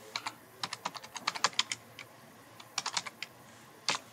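Typing on a computer keyboard: a quick run of keystrokes over the first second and a half, a pause, then a short burst of a few keys near three seconds and a single key just before the end.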